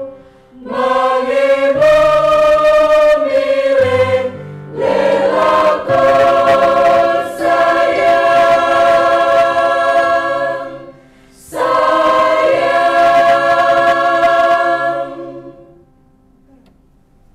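Mixed choir singing sustained chords in several parts, in phrases broken by brief pauses. The final chord is held and then released shortly before the end, closing the song.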